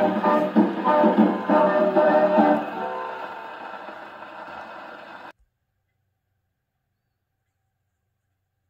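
A 1929 Madison 78 rpm shellac record played on an acoustic gramophone: a dance band with brass plays the closing bars of a fox-trot, then a final chord fades away over a couple of seconds. The sound cuts off suddenly about five seconds in.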